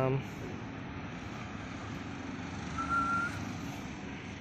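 Steady hum of distant city traffic, with a brief high tone about three seconds in.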